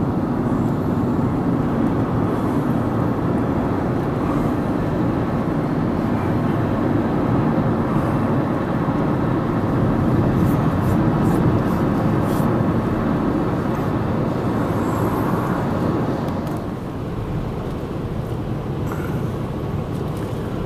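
Steady road noise of a car driving, heard inside the cabin: a rumble of tyres and engine that drops a little in level for the last few seconds.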